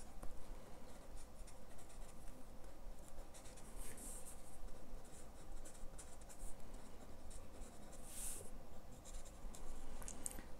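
Arrtx marker's fine nib scratching and dabbing faintly on sketchbook paper in many short strokes as small stamens are drawn into the flowers, with two slightly longer strokes about four and eight seconds in.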